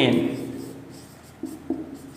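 Marker pen writing on a whiteboard: soft scratchy strokes with two brief louder squeaks about a second and a half in. A man's word trails off at the very start.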